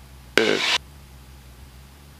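Faint, steady low drone of a Cessna 172S engine at cruise power, heard through the headset intercom feed. One short spoken syllable cuts in about half a second in.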